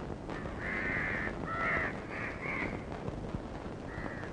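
Crows cawing, a quick run of four or five calls in the first three seconds, over a steady background hiss.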